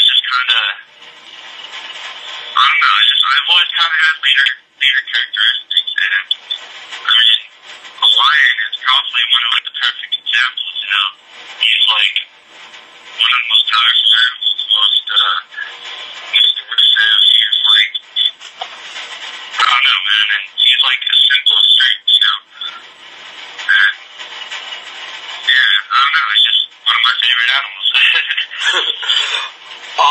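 A man talking over a thin, telephone-quality line: continuous speech with pauses, too garbled for the words to be made out.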